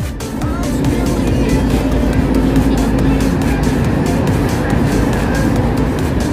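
Background music with a steady beat over a loud, steady low rumble.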